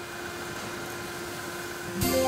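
A steady rushing noise, like a wind or whoosh effect, with a faint held tone underneath.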